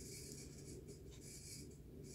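Faint, uneven rustling and rubbing of hands holding a phone up, over quiet room tone with a low steady hum.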